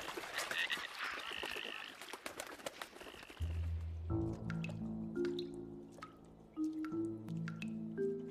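Goldeneye ducks taking off from a river, a dense run of splashing and wingbeats across the water for about three seconds. Then background music takes over, with sustained low notes and light plucked notes above them.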